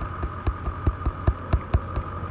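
Crackling and popping of a low fire burning through palmetto and pine undergrowth, irregular sharp pops several times a second over a steady hum.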